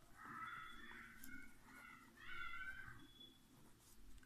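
Two faint, drawn-out animal calls in the background. The second call rises and falls in pitch.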